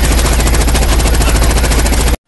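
A long, loud, unbroken burst of rapid automatic gunfire, the shots following each other too fast to count.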